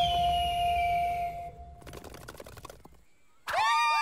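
Cartoon sound effect: a low rumble with a single held ringing tone that fades away over the first two seconds. Near the end, several high female voices cheer together in one long held note.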